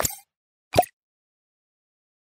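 Two brief sound effects from an animated logo intro: one right at the start and one a little under a second in.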